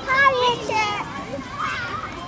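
Young children's voices at play, high-pitched calls and chatter without clear words, loudest in the first half-second.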